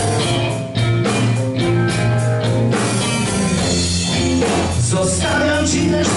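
Live blues-rock band playing: electric guitars over drums and bass, loud and continuous.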